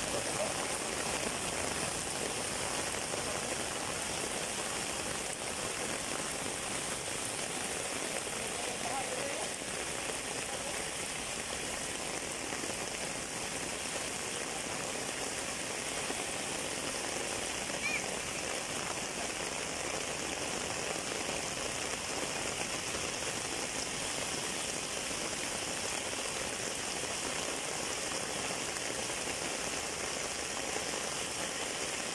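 Heavy rain pouring steadily, an even, unbroken hiss of downpour on the road, leaves and roofs.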